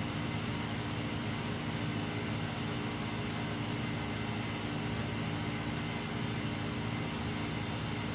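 Steady machine hum with a high hiss, level throughout, with nothing else happening.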